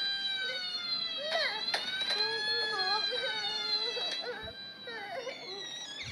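Toy fire truck's siren wailing, its pitch sliding slowly up and down, fading out about five seconds in.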